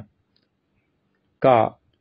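A man speaking Thai: the end of a word, a pause of more than a second, then one short word.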